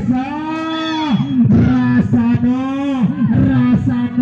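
A voice calling out loudly in long, drawn-out, sing-song phrases, each held note bending in pitch, typical of a match commentator.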